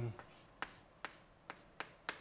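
Chalk writing on a blackboard: a string of about five short, sharp taps and clicks, roughly two a second, as the chalk strikes and lifts off the board.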